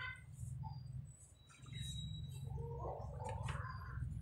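Faint bird chirps over a low steady rumble, with short thin high notes about two seconds in and a wavering call in the second half.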